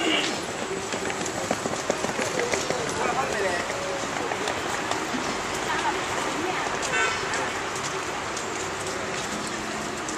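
Background voices talking over a steady hiss of street-stall noise, with a short high tone about seven seconds in.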